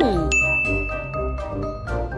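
A cartoon sound effect: a short falling pitch glide, then a single high tone held for about a second and a half, over children's background music with a steady bass beat.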